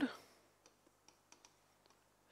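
A few faint, light clicks of a marker tip striking a whiteboard as a word is written, spread unevenly over about a second and a half.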